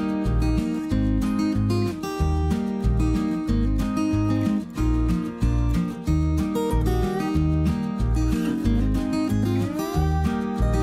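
Background music: an acoustic guitar tune with a steady bass beat.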